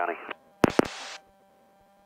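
Aircraft radio: a push-to-talk microphone keyed twice in quick succession, two sharp clicks heard over the headset followed by a short burst of radio hiss that cuts off. This 'double tap on the mic' signals that a radio call was heard and understood.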